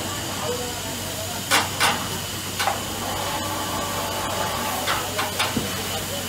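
Steady hiss of steam from anchovy-boiling vats, with a handful of sharp wooden clacks as stacked wooden drying trays knock together: two close together about a second and a half in, one more shortly after, and three quick ones near the end.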